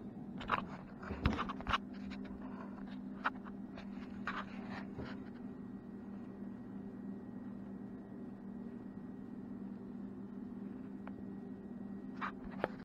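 A few sharp knocks and scrapes in the first five seconds as a wooden longbow and tools are handled at a workbench, over a steady low hum that runs throughout.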